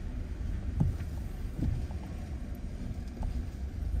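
Low, steady engine and tyre rumble inside the cabin of a Ford car creeping forward in first gear with the clutch held at the biting point, with two faint knocks in the first two seconds.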